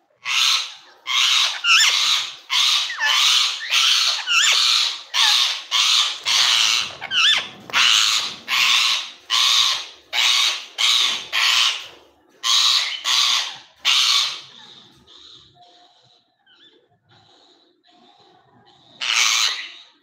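Rose-ringed parakeet giving loud, harsh screeching calls over and over, about two a second, stopping about three quarters of the way through, with one more call near the end.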